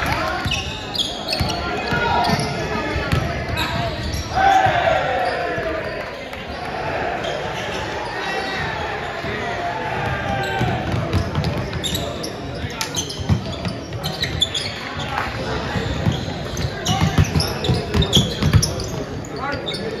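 Indoor basketball game: a ball being dribbled and bouncing on a hardwood gym floor, with players and coaches calling out indistinctly, echoing in a large hall.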